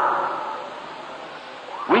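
A pause in a man's spoken prayer on an old live recording: the last word's reverberation dies away into steady hiss, and he starts speaking again near the end.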